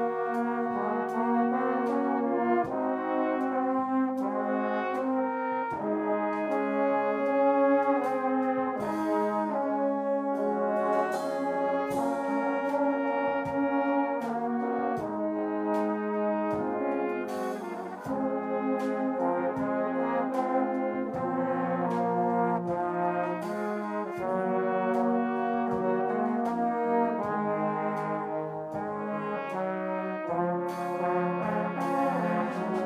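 Church brass band of tubas, euphoniums and trumpets playing a slow hymn in full chords, with regular drum and cymbal strikes keeping the beat.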